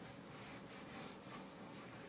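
Faint, irregular scratchy rubbing: a gloved hand working a wet coffee-ground paste into an antler.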